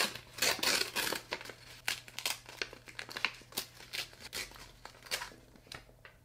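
A small paper-and-plastic packet being crinkled and torn open by hand: a run of irregular crackles that thins out toward the end.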